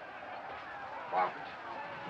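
A man's voice giving one brief raised call or shout about a second in, too short to make out words, over a steady background hiss.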